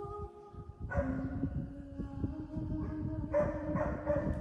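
Solo female voice in extended vocal technique. After a brief lull, a low wordless note is held from about a second in, rising slightly in pitch with a rough, crackly edge. A louder, brighter vocal sound breaks in near the end.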